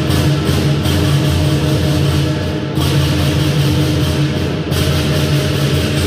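Chinese lion dance percussion band playing. A large drum beats under continuous clashing cymbals, with the cymbals briefly pausing twice.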